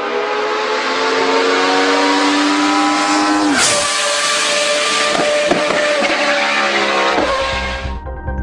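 Racing car engine running at high revs, its pitch climbing slowly, then dropping sharply about three and a half seconds in, with a few brief dips after.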